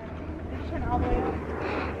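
Low steady rumble of wind on a handheld phone microphone, with a faint even hiss and no clear words.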